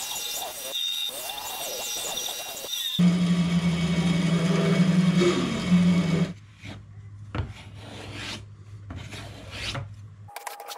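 Bandsaw cutting a guitar X-brace blank in half lengthwise: the blade chews through the wood over a steady motor hum. After about six seconds it gives way to quieter, scattered clicks of the cut strips being handled.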